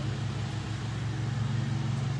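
A steady, low mechanical drone with a constant pitch, like a motor or engine running, unchanged throughout.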